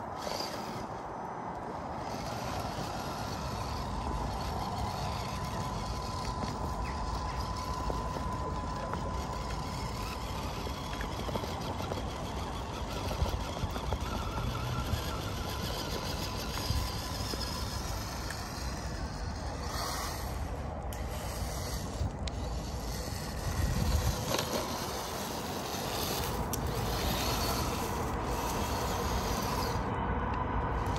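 Amewi Gallop 2 RC crawler's electric motor and gears whining steadily as it climbs a dirt slope, with a thin high whine in the first half.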